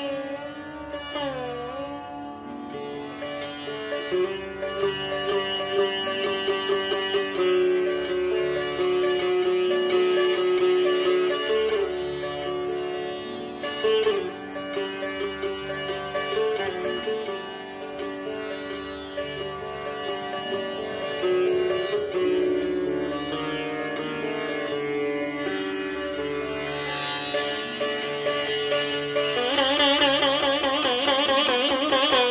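Solo sitar playing an alaap in Raag Bhatiyar, with sustained melody notes bent and slid between pitches over a quick, evenly repeated stroking high above the melody.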